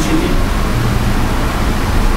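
Steady background noise, a low hum under an even hiss, with no speech over it.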